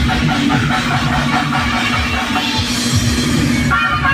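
Loud dance music with a heavy bass beat, played through a large outdoor DJ truck's speaker stack.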